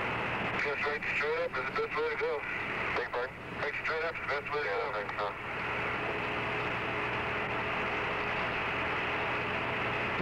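Hiss of the Apollo air-to-ground radio link, with a muffled astronaut's voice coming through it for the first five seconds or so, then only the steady hiss.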